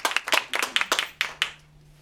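A few people clapping in a small room, thinning out and stopping about one and a half seconds in.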